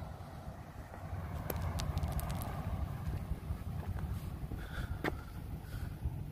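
Uneven low wind rumble on the microphone outdoors, with a few light clicks scattered through it.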